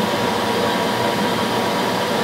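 Steady machine drone with a faint constant whine running unchanged throughout.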